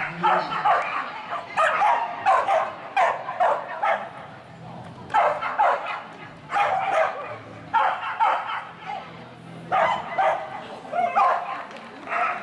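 An Australian Kelpie barking in repeated bursts of quick, high yips, about eight bursts a second or two apart, while running an agility course.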